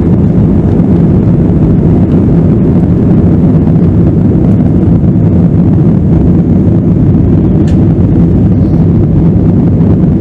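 Airbus A320-family airliner's jet engines at takeoff thrust, heard from inside the cabin as a loud, steady rumble through the takeoff roll, lift-off and initial climb.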